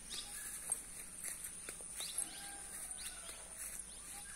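Short bird chirps, several in a row, over a steady high-pitched insect drone, with one longer faint whistling call about two seconds in.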